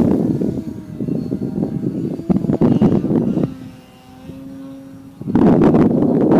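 Radio-control Slick 540 model airplane flying overhead, its motor and propeller giving a faint droning hum. Wind buffets the microphone in gusts, loudest from about five seconds in.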